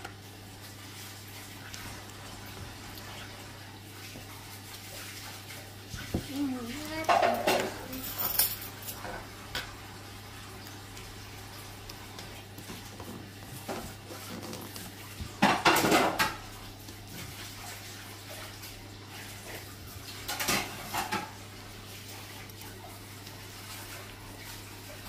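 Metal spoon scraping through firm chocolate ice cream and knocking against the sides of a paper pint tub, in a few short bouts over a steady low hum.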